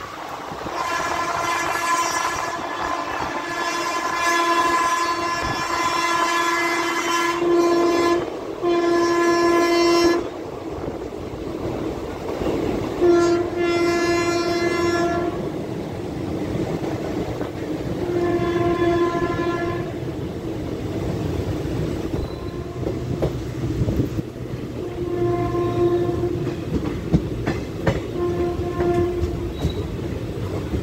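The train's electric locomotive air horn sounding repeatedly as the train runs: one long blast of several seconds, then a string of shorter blasts about two seconds each, over the steady rumble and clatter of the coaches on the rails. The horn is a warning to track workers on the line ahead.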